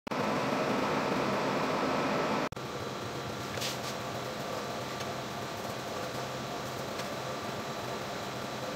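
Steady hum of kitchen ventilation fans, louder in the first two and a half seconds, then dropping suddenly to a lower steady hum. A couple of faint clicks about three and a half seconds in come from a knife cutting raw rack of lamb on a cutting board.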